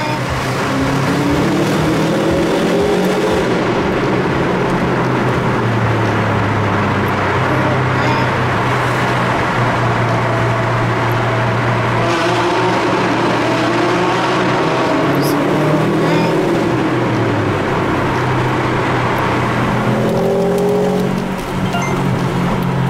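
Car engine and road noise heard from inside the cabin while driving through a road tunnel. The engine note rises and falls several times with the throttle.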